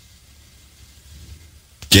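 A pause in a man's speech, holding only a faint low background hum. His voice comes back near the end.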